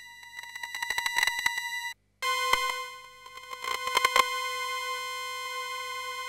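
Roland JX-10 Super JX synthesizer (JX10se upgrade) holding a bright sustained tone while its VCA volume level is changed in real time, with sharp clicks crackling through the note: the audio glitches that volume edits cause on this upgrade. The tone cuts out about two seconds in, then a held tone an octave lower dips and swells in loudness, with another burst of clicks about four seconds in.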